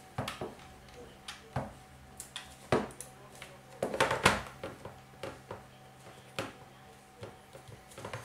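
Plastic clicks and knocks as a ThinkPad laptop docking station is turned over, handled and set down on a wooden desk, a string of separate knocks with the loudest cluster about halfway through, over a faint steady hum.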